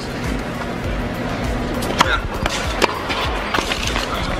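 Tennis ball struck with rackets during a rally: a sharp pop about two seconds in, the loudest sound, then further hits in quick succession.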